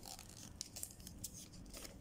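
Sheet of paper being folded and pressed flat by hand: faint, scattered crinkles and rustles.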